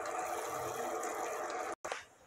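Sugar, corn syrup and water syrup boiling in a stainless steel pot, a steady bubbling hiss that cuts off abruptly near the end.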